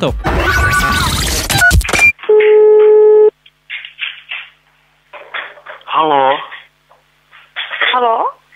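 About two seconds of a noisy sound effect, then a single steady telephone tone lasting about a second as a call is placed. After it come short, muffled voice sounds over the phone line.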